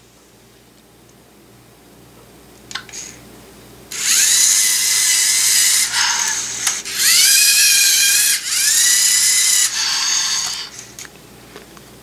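LEGO Mindstorms EV3 servo motors whining through their gears in several bursts as the GRIPP3R robot drives and closes its claws on a stack of tires. The whine starts about four seconds in, rises in pitch at the start of each burst, and stops near the end.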